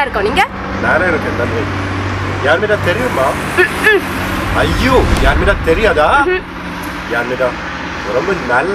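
A man speaking over street traffic noise, with a steady low hum behind his voice and a low rumble that swells about five seconds in.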